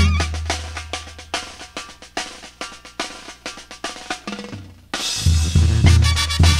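Brass band drum break: snare drums and a bass drum play alone in a run of strokes that gets steadily quieter, over a low held note. About five seconds in, the full band with its brass comes back in loudly.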